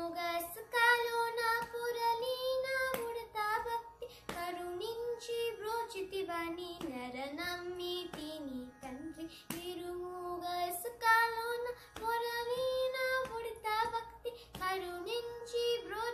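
A young girl singing solo in long held notes that slide and bend between pitches, phrase after phrase with short breaks between them.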